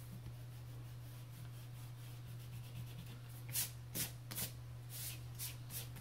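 Eraser rubbing on drawing paper: quiet at first, then a quick run of about six short strokes in the second half.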